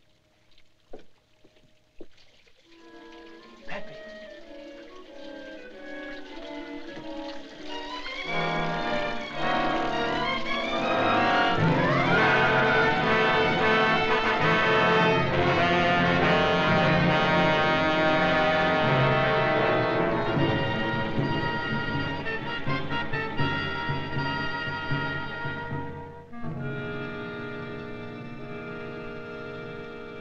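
A few sharp knocks, then an orchestral film score with brass that builds from quiet to a loud swell about ten seconds in, holds, and eases off in the last few seconds.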